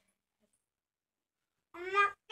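Near silence, then near the end a short, loud, high-pitched vocal call that rises in pitch.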